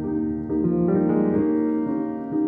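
Solo piano playing a slow free improvisation: held, ringing chords with new notes struck about half a second in and again just past one second.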